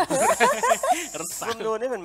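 A loud hiss, like a drawn-out 'sss', over a voice sliding sharply up and down in pitch. The hiss stops after about a second, and talking carries on.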